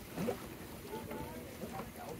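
Tour boat moving across a lake: a steady low rumble of the boat and water, with passengers' voices talking over it.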